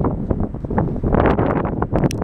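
Wind buffeting the microphone: loud, irregular, gusty rumble with frequent short spikes.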